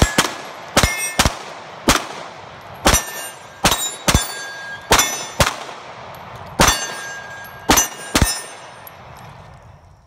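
A Tanfoglio EAA Witness Stock III pistol fired about a dozen times at an uneven pace, most shots followed by the ring of hit steel targets. The last shot comes about 8 seconds in, and its echo and ringing fade away.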